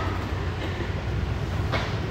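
Steady low rumble of background room noise in a large room, with a faint brief sound near the end.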